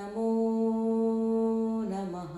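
One long note held at a steady pitch, rich in overtones, which starts to drop in pitch and fade near the end.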